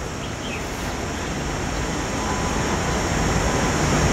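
Steady rushing, rumbling outdoor noise with no speech, growing slowly louder.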